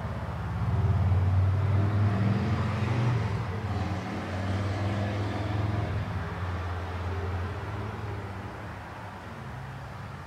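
A passing road vehicle: a low engine rumble that swells about a second in and slowly fades away.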